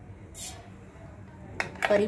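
Mustard seeds tipped from a steel spoon into oil in a stainless steel pan, a short hissing patter as they land about half a second in, then a couple of light clicks of the spoon near the end.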